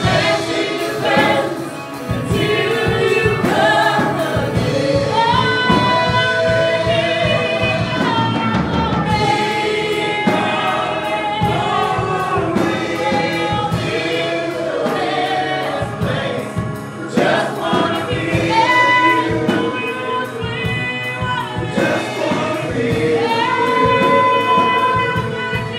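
Gospel choir singing a worship song over band accompaniment, with long held notes and a steady beat.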